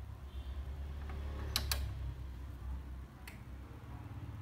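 Sharp switch clicks on a vintage Pioneer cassette deck as it is being switched on for testing: two close together about a second and a half in, and one more near the end, over a low handling rumble.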